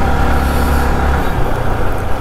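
Yamaha R15 V3's 155 cc single-cylinder engine running at a steady, low throttle while riding, heard with wind and road rumble on the helmet mic. The low rumble eases about a second in.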